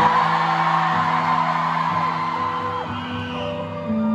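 Live concert music over an arena sound system: long held keyboard chords over a pulsing bass, with the crowd whooping and yelling over it.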